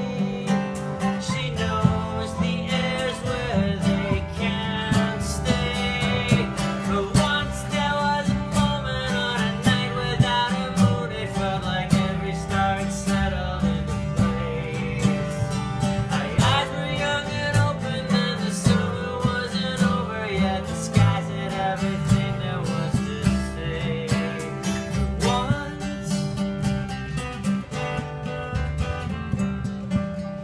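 Live folk music: acoustic guitar, upright bass and keyboard playing together in an instrumental passage, with steady plucked and strummed guitar over a continuous bass line.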